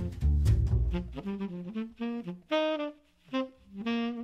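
Jazz recording: saxophone playing over bass and drums, then about a second in the rhythm section drops out and the saxophone carries on alone in short separate phrases with brief pauses between them.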